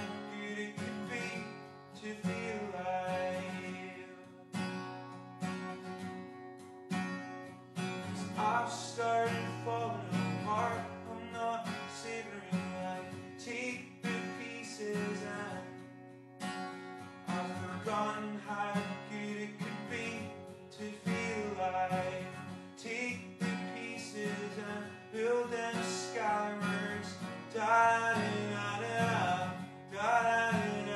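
Solo acoustic guitar playing chords in an instrumental passage of a song, with no singing.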